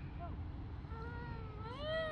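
A young child's long, high-pitched squeal starting about halfway in, held level at first and then rising and falling in pitch.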